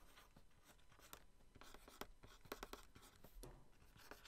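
Faint scratching and light taps of a stylus on a Wacom drawing tablet as rough sketch strokes are drawn, a few short strokes clustered about two and a half seconds in.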